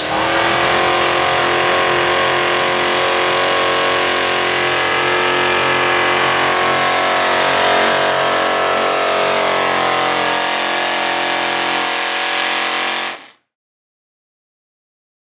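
Mini modified pulling tractor's supercharged engine running flat out under load, a dense, steady howl whose pitch sags slowly as it drags the sled. It cuts off suddenly near the end.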